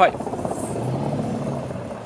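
Runoff water from a hose-simulated rain spilling through a storm drain grate into the catch basin: a steady splashing rush that stops shortly before the end.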